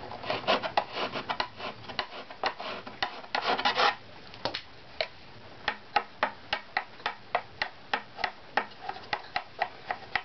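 A steel scraper working the inside of a violin back plate, dense rasping strokes for about four seconds. Then light, even taps with a small stick along the plate, about three a second, each ringing briefly with the plate's tap tone as the strips are checked for pitch.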